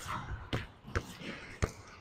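Basketball dribbled on a hard indoor court floor, bouncing about four times, roughly twice a second.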